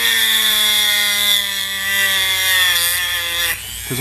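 Handheld rotary tool with a diamond-coated bit grinding into soft sedimentary stone: a steady high-speed whine that sinks slightly in pitch as it cuts, then stops about three and a half seconds in.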